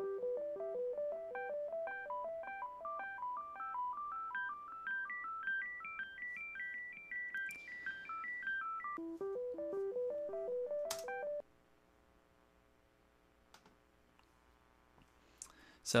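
Programmed synthesizer arpeggio with a warm, gentle tone whose overtones are quiet. Its quick, even notes step up the scale and back down, then climb again before cutting off suddenly about eleven seconds in.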